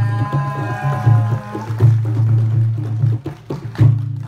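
Banjar madihin performance: hand-struck terbang frame drums playing under a sung line that ends about a second and a half in, with a steady low boom beneath. The drumming goes on alone and closes with a loud stroke near the end, finishing the piece.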